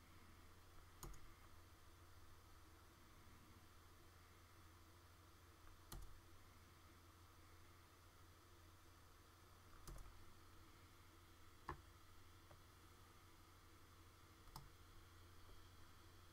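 Near silence: a low steady hum with five faint, sharp clicks spaced a few seconds apart, from hand work at a computer.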